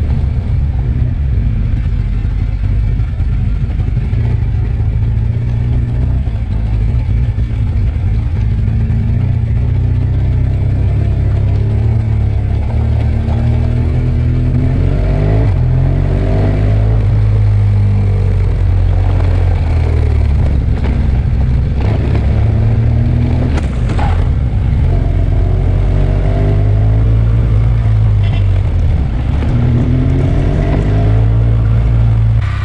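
Adventure motorcycle engine running on a gravel road, heard from a camera mounted on the bike, under a heavy low rumble. Its pitch rises and falls repeatedly with throttle and gear changes, more often in the second half, and there is one sharp click a little past the middle.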